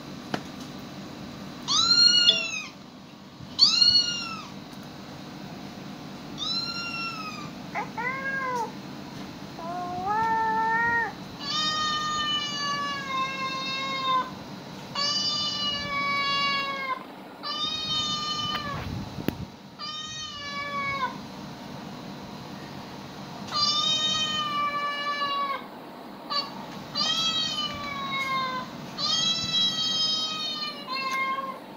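Cat meows played from a phone, over and over: about fifteen calls, some short and rising-then-falling, others long and drawn out.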